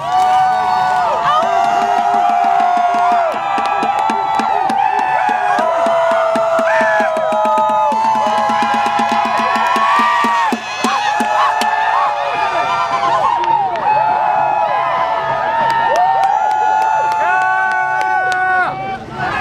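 A crowd singing together, many voices holding long notes that overlap and glide at different pitches.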